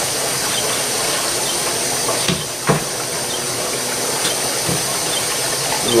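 Hot degreaser solution in a steel drum churning and bubbling steadily as compressed air is blown through it to agitate the bath, like a big old stew pot going. Two short knocks come about two and a half seconds in.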